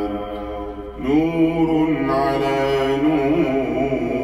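A man reciting the Quran in a slow, melodic chanted style, drawing out long held notes. One long note ends just before a second in, and a new phrase starts right after with small ornamented turns in pitch.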